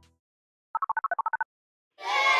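A rapid run of about ten short electronic beeps hopping between two pitches, lasting under a second, set in otherwise dead silence: an edited-in sound effect.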